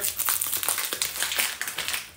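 Plastic hop-pellet bag crinkling and crackling as it is opened and handled, a quick run of small crackles.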